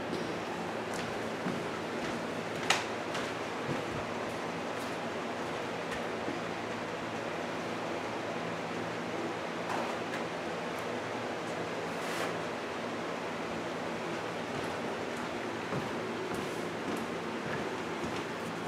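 Box fan and air conditioner running: a steady rushing noise with a low hum underneath. A couple of faint clicks sound within it.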